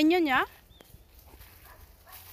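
A dog howling: one loud, wavering howl that breaks off about half a second in.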